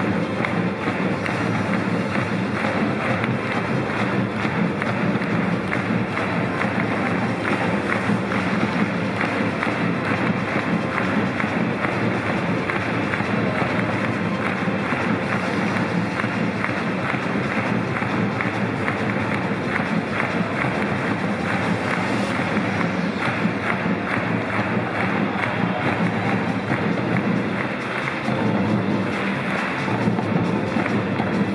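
Music over a football stadium's public-address system, with steady crowd noise underneath.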